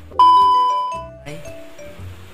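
A loud, steady, high beep: the TV test-tone sound effect that goes with a colour-bars glitch transition. It starts a moment in and lasts about a second before fading.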